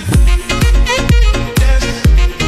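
Background music: a dance track with a heavy kick drum about twice a second. The beat comes in right at the start.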